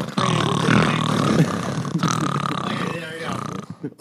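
Speech: several men talking over one another, with laughter mixed in.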